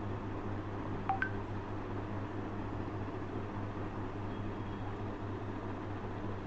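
Two short electronic beeps in quick succession about a second in, a lower note then a higher one, over a steady low hum and hiss of room noise.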